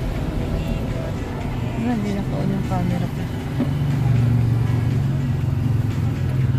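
A car driving slowly along a street, heard from inside the cabin as a steady low rumble of engine and road noise. Music with a voice plays over it, with held low notes about four seconds in.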